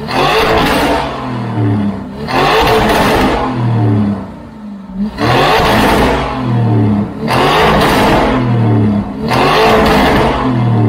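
Lamborghini Urus twin-turbo V8 revved through a freshly fitted iPE full exhaust system: about five blips of the throttle, each a second or two long, falling back toward idle between them.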